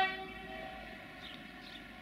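End of a two-tone train horn: a short second note, pitched differently from the first, dies away within the first half second. After it there is only a low background with a few faint high chirps.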